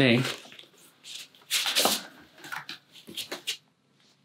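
Paper envelope being opened and a sheet of paper pulled out of it, in several short bursts of paper rustling, the loudest about one and a half to two seconds in.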